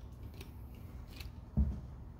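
A steady low room hum with a few faint, short clicks, and one dull low thump about one and a half seconds in.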